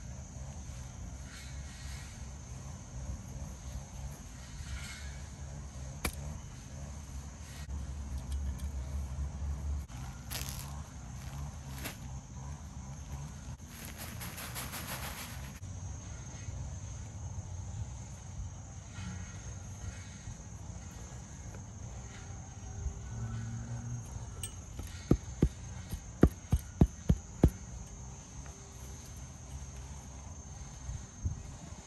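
Insects chirring steadily over a low rumble of outdoor background noise. Near the end comes a quick run of about eight sharp knocks.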